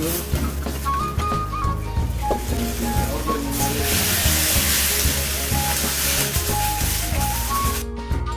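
Potato peels and salt frying in very hot oil (about 260 °C) in a frying pan as they are stirred, to season the pan, a steady sizzle that grows louder about halfway through and cuts off sharply at the end. Background music with a melody plays over it.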